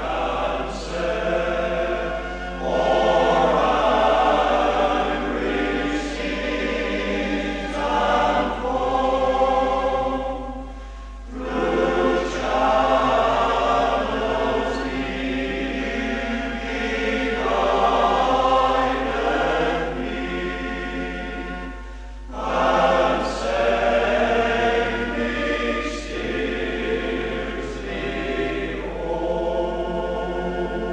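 Male voice choir singing in long sustained phrases, with brief breaths between phrases about 11 and 22 seconds in, played from a 1973 cassette recording.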